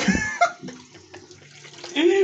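Water from a bathroom sink tap splashing and slurping as a man rinses his mouth, in irregular small splashes. A brief vocal sound comes right at the start.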